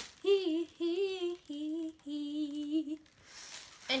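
A girl humming a short four-note tune, the last two notes lower and the last held longest, with a short laugh at the very end.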